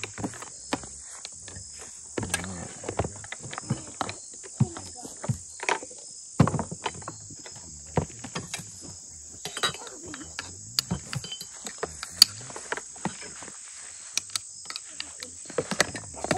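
Insects in the grass chirring steadily at a high pitch, with scattered clinks and knocks of a metal spoon and glass canning jars as tomatoes are packed and pushed down into the jars.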